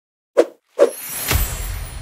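Audio logo sting: two short plops about half a second apart, then a whoosh with a low rumble that swells and peaks a little past the middle.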